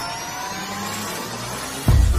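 Intro sound effects for an animated logo sting: a synthetic rising sweep, several tones gliding steadily upward like a jet-like riser, cut off near the end by a sudden heavy impact hit with a deep boom.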